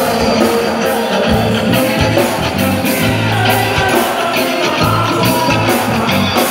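A live band playing loud through a PA: drum kit with cymbal strokes on a steady beat about twice a second, electric guitar and bass, with singing.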